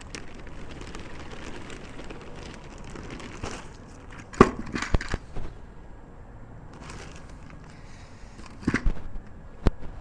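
Dry sphagnum peat moss being poured from its plastic bag into a plastic five-gallon bucket and broken up by hand: a soft steady rustle, then crinkling and a few sharp cracks near the middle and end.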